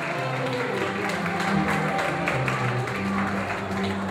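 Live dance band music, with a bass line stepping between held notes.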